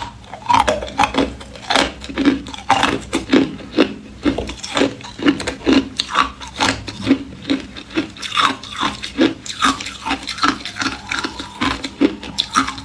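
Ice being bitten and chewed close to the microphone: a dense, irregular run of sharp crunches, about three a second.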